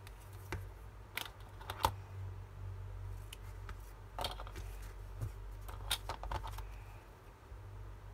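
Scattered short snips, taps and paper rustles of hands working with paper, a roll of double-sided tape and scissors on a cutting mat, over a steady low hum.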